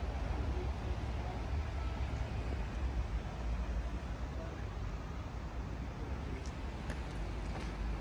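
Steady outdoor background noise: a low rumble with a light hiss, with no single distinct source standing out.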